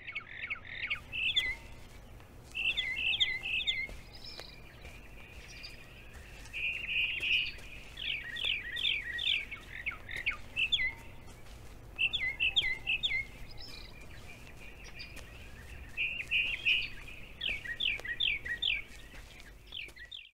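Songbird singing: short phrases of quick, high chirps repeated every few seconds, over a steady low hum.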